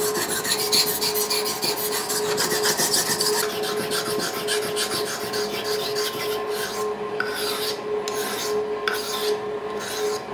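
A skinning knife's steel blade being sharpened on a wet whetstone: rapid, raspy back-and-forth strokes that break into separate strokes with short pauses in the second half. A steady hum runs underneath.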